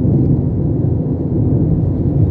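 Steady low rumble of a car driving at highway speed, heard from inside the cabin: tyre and engine noise.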